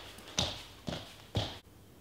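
Bare feet stepping on a hard floor: three footsteps about half a second apart.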